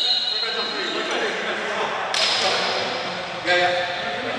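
Players' voices in an echoing gym hall, with a sudden burst of noise about two seconds in and a short pitched call near the end.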